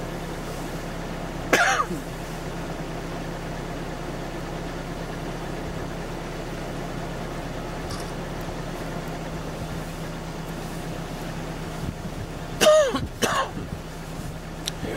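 A person coughs about a second and a half in, and a louder cough-like burst comes near the end, over a steady low hum from an idling vehicle engine.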